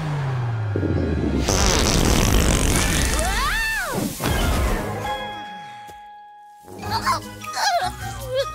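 Cartoon fart sound effect from a baby dragon with an upset stomach: a long low blast sliding down in pitch, then a loud hissing rush of gas, with a short cry rising and falling in pitch near the middle, over background music.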